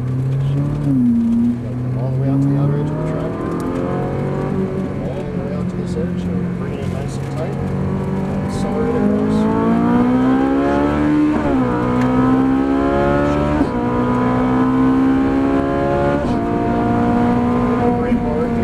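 Ferrari 458 Italia's 4.5-litre V8 accelerating hard, heard from inside the cabin: its note climbs steadily in pitch, drops sharply at two quick upshifts in the second half, and climbs again.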